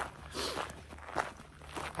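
A few soft footsteps of a person walking on a dirt road.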